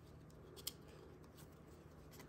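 Near silence: faint handling of a small stack of trading cards as one card is slid behind the others, with a single small click a little under a second in.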